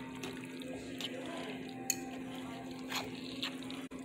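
A spoon stirring sauced rice and shredded chicken in a pan, with soft scrapes and a few light clicks against the pan, over a steady low hum.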